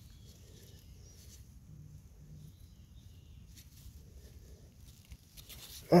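Faint rustling and scraping of dry leaf litter and soil as a hand digs around the base of a large morel and pulls it up.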